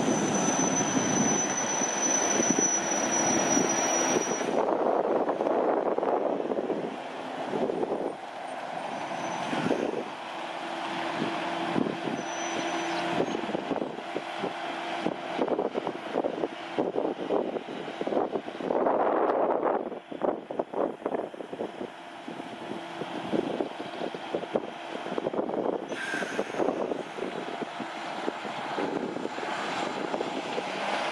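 Heavy road-train trucks driving by: diesel engine and tyre noise that swells and fades, loudest in the first few seconds, with a faint steady whine underneath.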